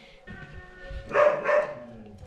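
A dog barking twice in quick succession over steady background music.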